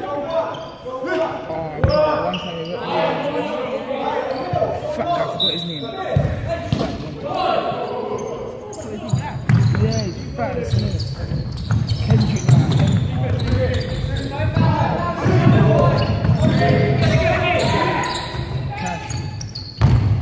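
A basketball bouncing on a wooden court in a large, echoing sports hall, under near-constant talking from people close by.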